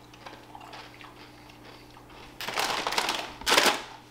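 Crinkly plastic snack bag rustling in two bursts in the second half, the second shorter and louder, over a faint steady hum.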